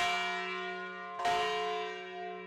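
The 1,800-pound spirit bell, swung on its wheel-mounted yoke, ringing. It is struck once at the start and again about a second and a quarter later, and each stroke leaves a long, slowly fading hum on its deep F-sharp.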